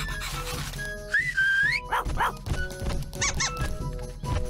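Light cartoon background music with short dog-like barking from a cartoon ladybird, and a squeak that rises in pitch a little over a second in.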